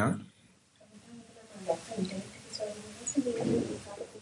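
Doves cooing in short, low calls, with a few faint high bird chirps, from about a second in.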